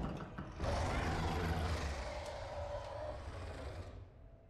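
Soundtrack of a TV episode's cave scene: a loud, deep rumble with a rushing noise over it. It swells about half a second in and cuts off abruptly near the end.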